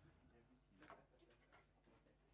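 Near silence: room tone with a few faint, short knocks and rustles, the clearest about a second in.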